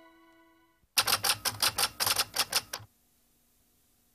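Typewriter keys striking in a quick run of about a dozen strokes, roughly seven a second, starting about a second in and stopping short of the three-second mark.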